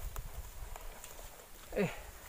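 Irregular low rumbling and soft knocks of handling noise on a body-worn camera being jostled, with a man's short 'Eh' near the end.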